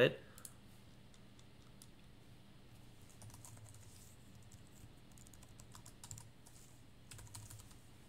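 Faint typing on a computer keyboard, in short runs of keystrokes, over a steady low hum.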